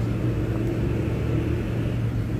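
Steady low rumble with a constant hum underneath, background noise of the recording heard in a pause between spoken lines.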